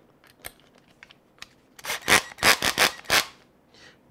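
Cordless drill driving a small screw into the plastic diff cover of an Axial SCX10 II axle: a rasping, grinding run of about a second and a half, starting about two seconds in, after a few faint ticks.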